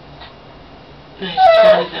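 A woman's high, sobbing cry, breaking in loudly about a second in after a faint stretch.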